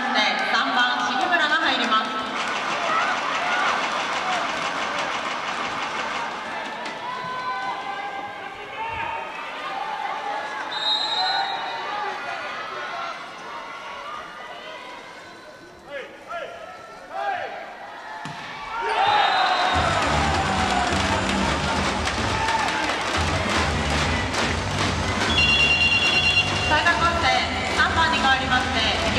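Arena crowd at an indoor volleyball match, cheering and chanting loudly at first, then easing off to a lull with a few sharp knocks. About two-thirds of the way in it surges back to loud cheering over a steady low rhythmic beat.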